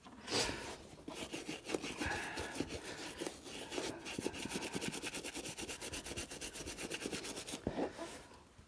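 Small dauber brush scrubbing black wax shoe polish into the toe of a leather shoe, with quick, even back-and-forth strokes several times a second, which stop shortly before the end.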